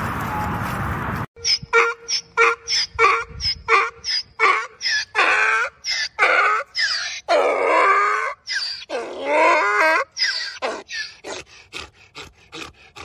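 A donkey braying: a run of short wheezy hee-haw calls builds into several long, wavering brays, then tapers off in shorter gasps. Before it, for about the first second, there is a steady rushing noise that cuts off abruptly.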